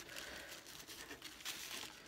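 Tissue paper wrapped around a book rustling and crinkling faintly as it is handled and its twine is pulled loose, in small irregular bursts.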